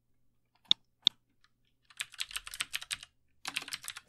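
Computer keyboard being typed on: two single clicks about a second in, then a quick run of keystrokes and a shorter run near the end.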